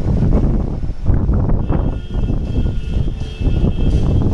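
Semi-electric stacker's hydraulic lift pump motor running as the platform is worked by its pendant control. There is a steady low rumble throughout, and a steady high whine joins about halfway through.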